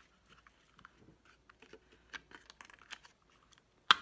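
Small clicks and paper handling as the eyelet and paper are fitted into a Crop-A-Dile eyelet-setting pliers, then one sharp metal click near the end as the pliers are squeezed shut to set the eyelet.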